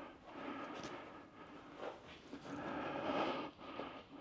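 Faint, uneven rustling and handling noise from someone moving about with a handheld camera, a little louder near the end.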